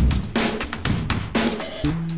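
Rock drum kit playing a busy run of bass drum and snare hits, with low held notes coming in near the end.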